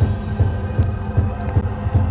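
Fireworks going off in a quick, irregular run of low booms, with a few sharp crackles.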